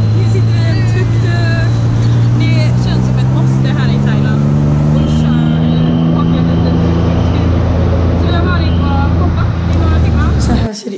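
Tuk-tuk engine running under the passengers, a low steady drone whose pitch climbs gradually in the second half as the vehicle picks up speed.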